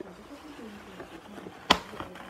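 Faint handling noise with one sharp click about three-quarters of the way through.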